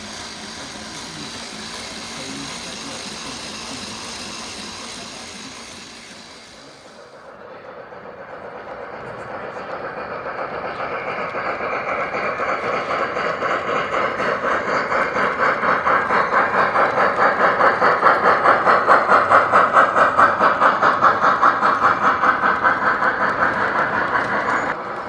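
A G-scale model Big Boy steam locomotive. On the workbench there is a steady hiss. After a cut, the running locomotive and its train make a fast, even rhythmic beat that grows louder as they pass.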